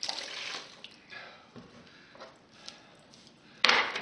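Clear plastic wrap crinkling as it is pulled over and pressed around the mouth of a glass jar, in a longer rustle and then several short bursts. A sharp knock comes near the end.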